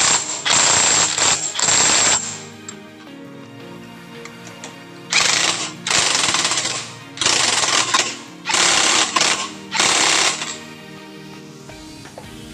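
Cordless impact wrench hammering in loud bursts as it runs down the nuts on a Honda Beat scooter's CVT pulleys. There are three bursts in the first two seconds on the rear clutch-pulley nut, then five more from about five seconds in on the front drive-pulley nut. Background music plays underneath.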